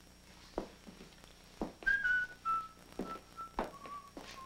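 A man whistling a short tune in held notes that step downward, starting about halfway through. Soft knocks and thumps of movement come before and between the notes.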